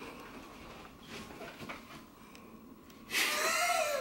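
Quiet room sound with faint scattered rustles, then a loud startled gasp near the end, breathy with a falling pitch, as someone is suddenly spooked.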